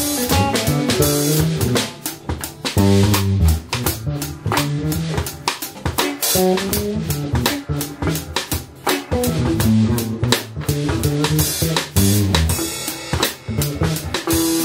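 Live band jamming on a single E7 chord: a drum kit keeping a steady beat, with the electric bass playing prominent moving lines as it eases into a bass solo, and electric guitar adding short fills in the gaps.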